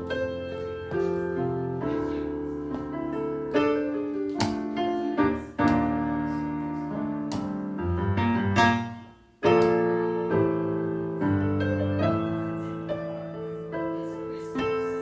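Digital stage keyboard played in a piano voice: an instrumental passage of held chords over a bass line. About nine seconds in the sound dies away for a moment, then the chords come back in suddenly.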